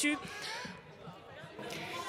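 A woman's last word ends, then a low, indistinct murmur of deputies' voices and chamber noise: the interruption she was protesting, which the chair then calls to order.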